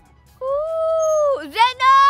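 A girl's voice wailing in long drawn-out notes, one held note followed by shorter, higher ones near the end.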